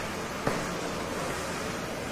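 Steady hiss of recording background noise, with one light tap about half a second in from a marker dotting the whiteboard.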